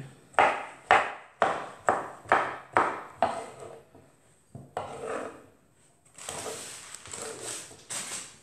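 Kitchen knife chopping boiled green beans on a wooden cutting board: about seven sharp knocks at roughly two a second, then one more after a pause. A quieter, longer noise follows near the end.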